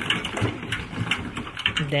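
Irregular clicks and knocks of hand construction work on a concrete-block house, with workers pouring a concrete column. A man's voice starts near the end.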